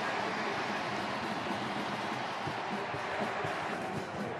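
Stadium crowd cheering after a touchdown, a steady wash of noise.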